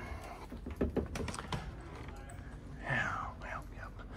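A quick run of light clicks and taps, about half a dozen over roughly a second, followed by a brief faint voice near the end.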